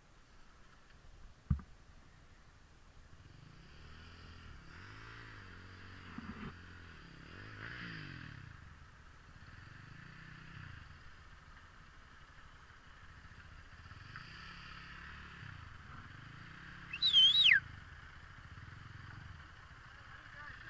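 Faint, distant ATV engine revving up and down in repeated surges. About seventeen seconds in there is a brief, loud, high-pitched squeal that slides downward.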